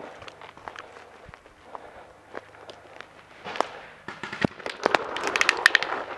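Paintball markers firing in the woods: scattered single pops at first, then rapid strings of shots from about four seconds in.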